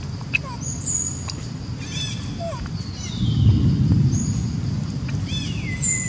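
Birds chirping and whistling over a low rumbling background noise, including one long falling whistle. The rumble swells about three seconds in.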